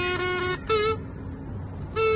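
A brass-instrument mouthpiece buzzed on its own: a held horn-like note, then a short slightly higher note, then a pause of about a second.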